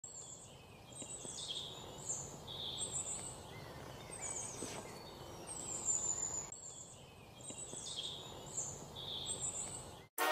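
Birds calling and singing in short phrases, some falling in pitch, over a faint steady hiss of outdoor ambience.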